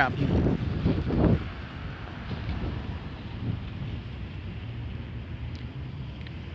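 A short exclaimed word, then a steady low rumble of wind buffeting the phone's microphone.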